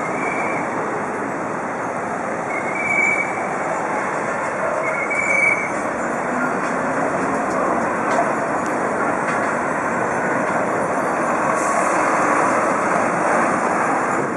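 Dense city traffic on a roundabout: a steady wash of car and coach noise mixed with a stream of bicycles. A few short, high-pitched tones stand out in the first six seconds.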